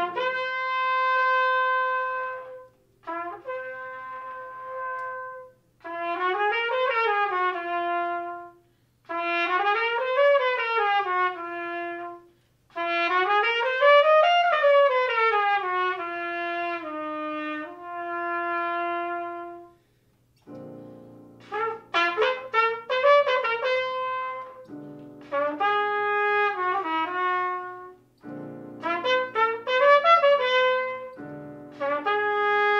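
Solo trumpet playing slow phrases, first a long held note, then lines that climb and fall back, with short silences between them. About twenty seconds in, a digital piano comes in underneath and the trumpet moves to quicker notes.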